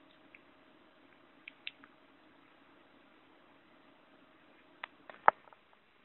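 A few small clicks and wet lip smacks as a cherry-wood tobacco pipe is handled and drawn on, the sharpest click near the end, over a faint steady hum from a desktop computer's fans.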